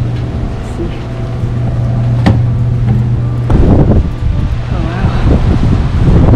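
Wind buffeting the microphone in loud, irregular gusts from about halfway in. Before that there is a steady low hum.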